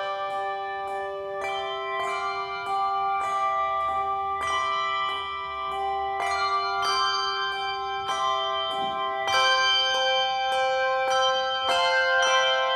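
A handbell choir plays a piece, striking bells in quick succession so each tone rings on and overlaps the next into sustained chords. The music grows a little louder near the end.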